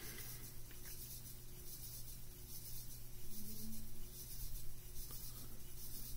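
Quiet room with a steady low hum and faint rustling and rubbing sounds, like paper being handled.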